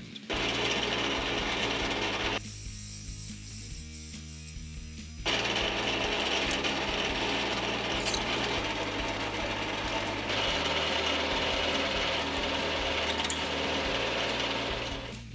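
Metal lathe running with a steady motor hum while a parting tool cuts off the spinning metal bar, then a twist drill bores through the part from the tailstock. The cutting noise changes abruptly a few times.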